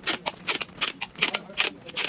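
Brown packing tape pulled off its roll in short rasps, about three a second, as it is wound around a parcel.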